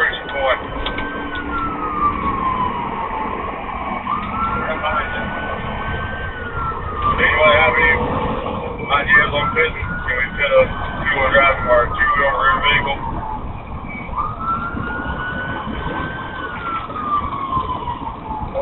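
Police car siren on a slow wail, climbing quickly, holding, then sliding down, about every five seconds. Bursts of crackly radio chatter come in the middle.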